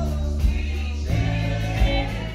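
Live rock band playing through the soundboard feed: singing over held bass notes, guitar and keys, with sharp drum hits about half a second in and again near the end.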